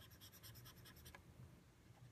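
Near silence, with faint quick ticking of scribbling with a stylus over the first second or so as a colour is shaded in on screen.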